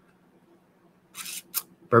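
Near silence, broken about a second in by a short hiss and a click, then a man begins to speak near the end.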